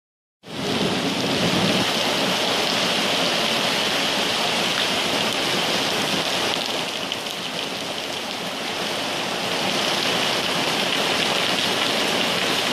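Very heavy rain from a squall pouring down onto paving, tables and awnings: a dense, steady hiss that cuts in just under half a second in.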